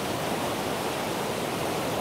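Rushing water of a rocky stream cascading over small rapids: a steady, even hiss.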